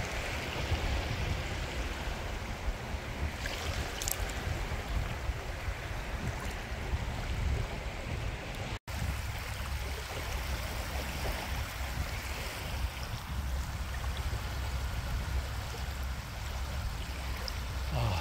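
Small waves lapping on a sandy bay shore, with wind rumbling on the microphone. The sound cuts out for an instant a little under halfway through, then carries on.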